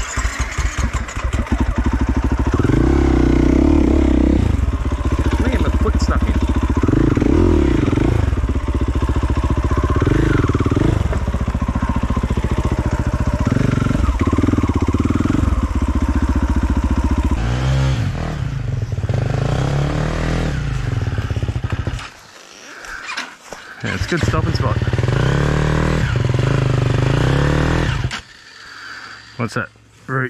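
Off-road dirt bike engine running close by, revving up and down on a rough forest trail, with the sound dropping away briefly about two-thirds through and again near the end.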